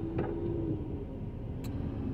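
Low steady rumble of car cabin noise, with a short held hum in the first second and a faint click about one and a half seconds in.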